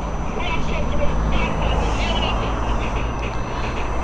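Road traffic on a street going past, a steady low rumble with a low engine hum running under it.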